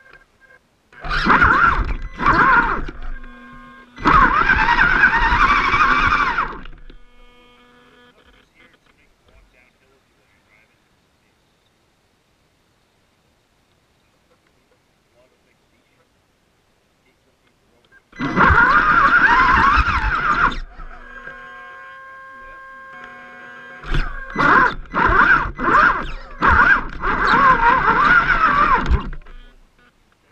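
Onboard RC rock crawler's electric motor and gearbox whining loudly in four bursts of throttle, a few seconds each, each starting and cutting off sharply, with near silence between.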